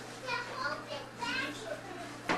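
A small child's high-pitched voice: two short bursts of unclear babble or exclamation, one near the start and one past the middle.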